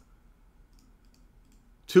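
Near silence with a few faint clicks, then a man's voice starts again near the end.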